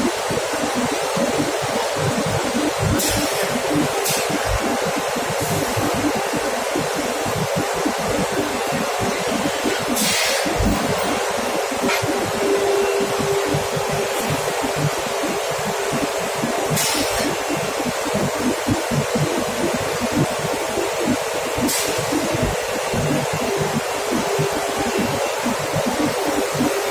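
Continuous loud rush and hum of industrial machinery, with a few brief sharp knocks scattered through it.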